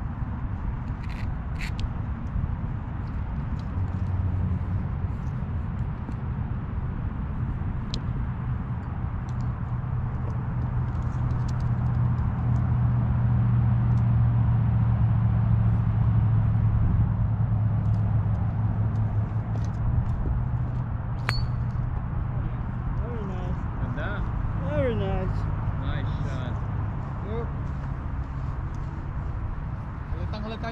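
A steady low engine hum that grows louder through the middle and then eases off, with one sharp click of a golf club striking a teed-up ball about two-thirds of the way in. Faint voices come in near the end.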